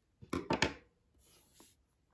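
Scissors handled after snipping the yarn: a few sharp metallic clicks in quick succession about half a second in, then a brief soft rustle.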